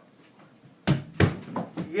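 A small ball striking an over-the-door mini basketball hoop: two sharp knocks about a third of a second apart, a little under a second in, followed by lighter knocks.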